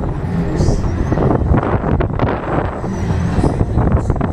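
Huss Break Dance 1 fairground ride spinning, heard from on board a car: a steady, loud rumble of the ride in motion mixed with wind rushing over the microphone.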